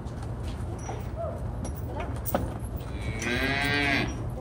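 A single fairly high-pitched moo from cattle near the end, lasting under a second. Before it, scattered faint knocks and one sharp knock a little after two seconds.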